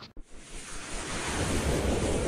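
Whoosh sound effect of an animated logo sting: a rushing noise that begins just after the start and swells steadily, with a rising sweep starting near the end.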